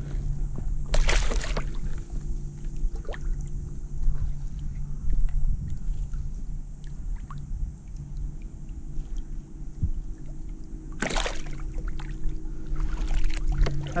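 A redfish (red drum) being released by hand into shallow water beside a kayak: water sloshing, with two louder splashes, one about a second in and one near the end. A steady low hum runs underneath.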